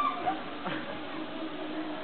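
Faint calls and a long, held low-pitched call from people's voices.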